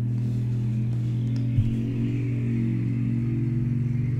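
Motorcycle engine running in street traffic, a steady drone whose pitch rises slightly over the seconds.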